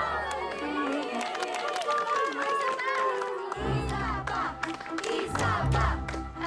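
Many young voices chattering and exclaiming over one another, like an excited crowd of schoolgirls, over background music whose low bass comes in about halfway through.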